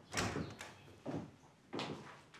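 A wooden interior door being opened, with a series of short knocks and thuds about half a second apart, the first the loudest.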